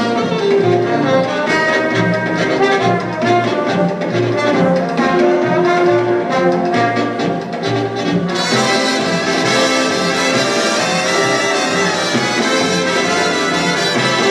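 Live big band playing brass-led swing, horns over a steady pulse in the bass. About eight seconds in the band opens up, suddenly brighter and fuller.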